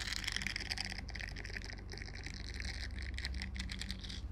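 Fingers rapidly scratching and rubbing a textured yellow silicone object close to the microphone: a dense, fast crackle.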